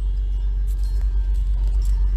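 Steady low rumble of a car in stop-and-go traffic, heard from inside the cabin.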